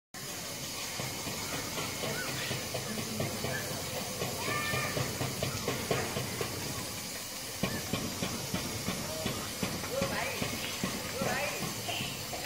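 Steady hissing outdoor background noise, with distant, indistinct voices and a few short pitched calls that come more often in the second half.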